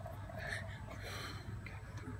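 Quiet room tone with a steady low hum and a few faint breathy sounds.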